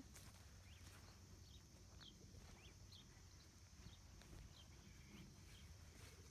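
Faint, scattered chirps of small birds: short high calls, one every half second or so, over a low outdoor rumble.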